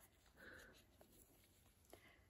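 Near silence: room tone, with a faint brief sound about half a second in.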